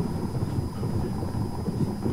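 Car driving over a road of parallel-laid concrete slabs: a steady low rumble of tyre and road noise.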